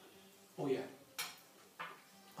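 A spoon clinking sharply once against a dish, about a second in, with short vocal sounds just before it and near the end.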